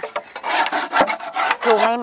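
Old comb and debris being scraped off the wooden floor of a bee bait box: a run of rasping scrapes on wood with a sharp knock about halfway through. The box is being cleaned out so that Asian cavity-nesting honeybees will move into it again.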